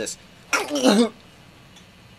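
A person's short, rough vocal outburst about half a second in, lasting about half a second, its pitch falling at the end.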